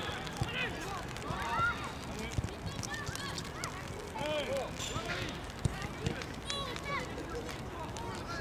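Children's voices shouting and calling across a football pitch in short scattered cries, with a few sharp thuds of the ball being kicked, the loudest about five and a half seconds in.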